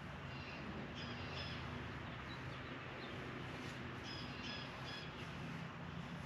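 Faint birds chirping outdoors, with short high calls in two clusters, one early and one about two-thirds of the way through, over a low steady hum.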